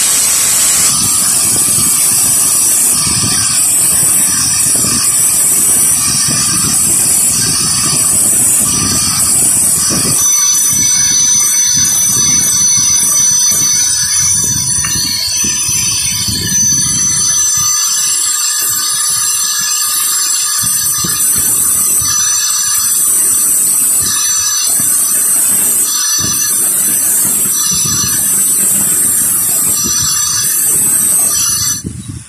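Electric angle grinder grinding down a weld bead on a steel motorcycle kickstart lever, a harsh grinding screech for the first ten seconds or so. After that the grinder keeps running off the work with a steady high whine.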